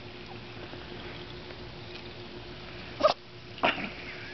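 A puppy making two short, sharp vocal sounds about half a second apart, about three seconds in, over a faint steady hum.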